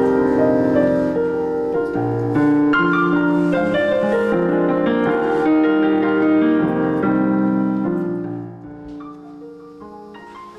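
Robertson RP5000 digital piano playing slow, sustained chords in its piano voice, with the last chord dying away near the end.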